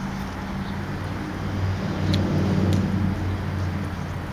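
Steady low hum of a running vehicle engine, swelling slightly in the middle, with a couple of faint clicks.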